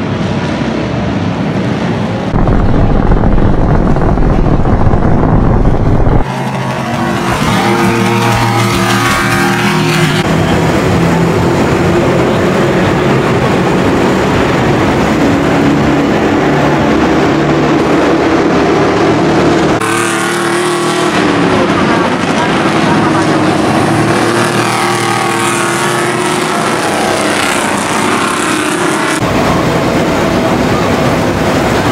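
Freightliner M2 racing trucks' engines running hard on the circuit, in a series of cut-together passes, their pitch rising and falling as they accelerate and go by. The loudest stretch is a few seconds in.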